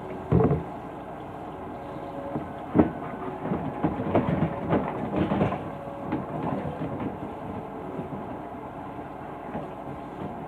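Kitchen faucet running into the sink while dishes and metal utensils clatter and clink as they are washed, with a couple of sharper knocks about half a second in and near three seconds in, then a busy run of smaller clinks.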